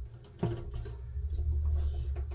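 A single click from a boat's seacock ball valve as its lever is turned open under the raw-water pump, followed by a low steady rumble.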